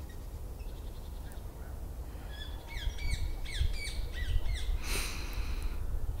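Wild bird calling a quick run of repeated short falling chirps, about halfway through, over a low steady rumble; a brief rush of noise follows near the end.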